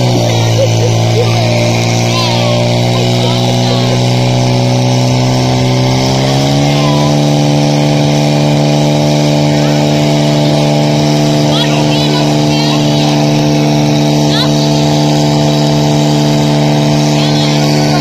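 Portable fire pump engine running hard, driving water through the attack hoses. Its pitch holds steady and low, climbs about six seconds in, then holds steady again.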